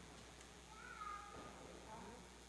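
A faint high-pitched squeal about a second long, starting just under a second in, from a young child's voice.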